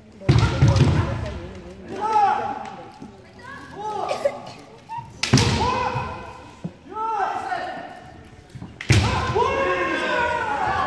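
Kendo fighters' kiai shouts, drawn-out and rising and falling in pitch, with sudden hard hits of bamboo shinai and stamping feet on the wooden floor about a third of a second in, about five seconds in and near the end.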